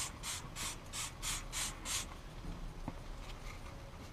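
Trigger spray bottle of plastic cleaner squirted over and over onto a floor liner: a quick run of short hissing sprays, about three a second, that stops about two seconds in.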